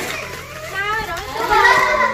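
High-pitched voices talking, a child's voice among them, starting about a third of the way in and getting louder toward the end.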